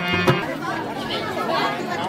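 Several people talking over one another, with drum music stopping just a moment in.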